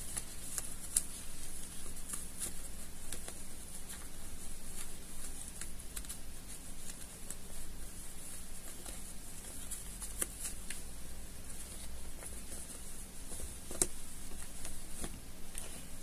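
Soft fabric rustling and scattered small ticks as a sewn, lined fabric dog boot is worked right side out by hand, over a faint steady low hum.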